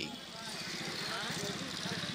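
Street ambience: a motor vehicle engine running steadily, with faint voices in the background.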